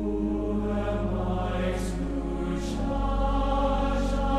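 Large choir of Brigham Young University students singing with pipe organ accompaniment: held chords over a steady low organ note, with two sung 's' sounds cutting through near the middle.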